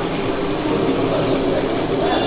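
Paneer masala sizzling steadily in a frying pan on a gas burner, over a steady low mechanical hum.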